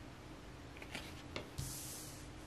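Faint handling of a card: a couple of small ticks, then a brief soft rubbing swish near the end as the card is slid down onto a cloth-covered table.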